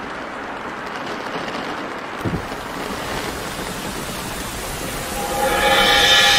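Steady rain falling, with a single low thump a little over two seconds in; music comes in near the end.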